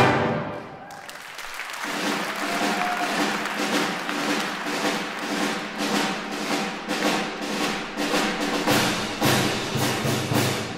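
Symphony orchestra playing, with percussion keeping a steady beat. It comes in quietly about a second in after an abrupt break, then builds up.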